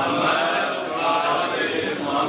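A congregation of men chanting together in unison with long held, slowly bending notes, the collective salawat blessing recited when the name of the Prophet's family or an imam is spoken.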